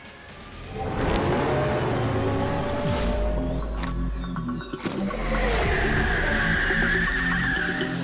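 Animated logo intro jingle: music with a car tire-squeal sound effect laid over it in the second half.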